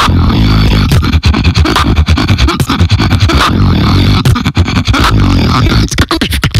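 Beatboxing into a microphone: a deep bass line held under sharp percussive hits.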